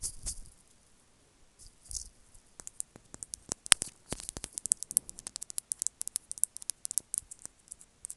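Close-miked ASMR trigger sounds from a small object handled with the fingers right at an earphone microphone. A brief rustle comes first, then from a few seconds in a dense run of sharp, irregular clicks and crackles.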